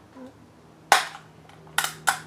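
Scissors snipping a small toy package open: one sharp snap about a second in, then a quick cluster of snaps near the end.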